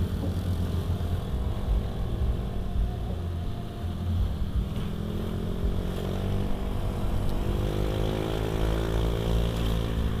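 Small motorcycle engine running at riding speed, heard from the rider's own bike with road and wind rumble. Its pitch rises steadily over the last few seconds as it speeds up.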